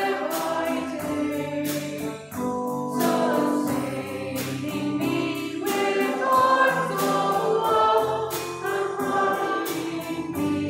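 A congregation singing a hymn together with instrumental accompaniment, in steady verse.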